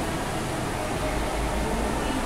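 Steady background noise: an even hiss with a low hum beneath it, like a fan running in the room.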